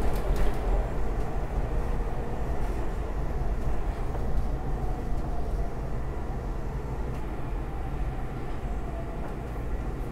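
Interior of a SEPTA Market-Frankford Line train running on elevated track: a steady rumble of wheels and running gear with a faint wavering whine, slowly getting quieter as the train slows for a station.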